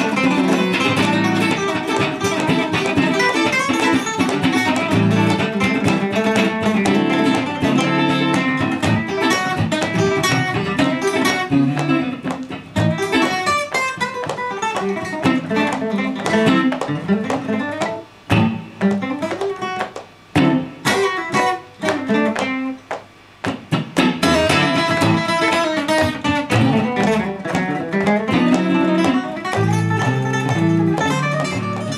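Steel-string acoustic guitar played fast and busily in a guitar jam, single-note runs mixed with chords, with an electric guitar playing alongside. From about eighteen seconds in, for several seconds, the playing turns choppy, with short stabbed notes and brief gaps.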